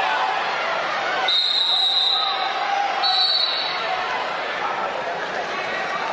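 Wrestling referee's whistle, two short steady blasts: the first lasts about a second and the second, shorter one comes a second or so later, over the murmur of an arena crowd. The whistle marks a false start, a wrestler moving before the whistle.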